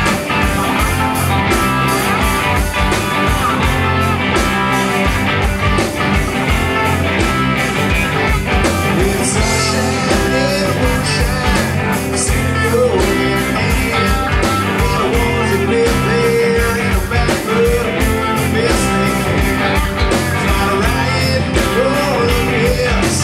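Live rock band playing: electric guitars, bass and a drum kit, loud and steady, with a man singing lead at the microphone in the second half.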